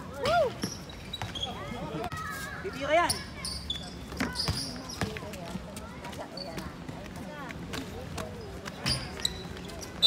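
Shouts and calls from players and onlookers during a basketball game, loudest about half a second in and again around three seconds in, with the ball bouncing on the court.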